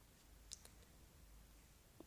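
Near silence with a single faint, short click about half a second in.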